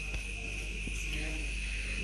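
Crickets trilling steadily in the background, one unbroken high-pitched tone, over the faint sizzle of chopped onion and garlic frying in an iron wok.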